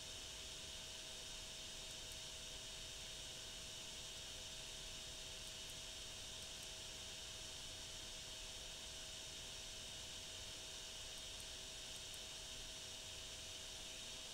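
Faint steady hiss with a faint hum in it, with no other sound: the background noise of the recording.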